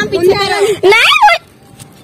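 A young woman's high-pitched excited vocalising, not clear words, with a sharp upward then downward swoop in pitch about a second in, stopping shortly after.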